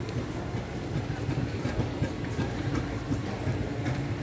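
Background noise of a busy airport check-in hall: a steady low rumble with indistinct crowd sound and faint scattered ticks and clatter.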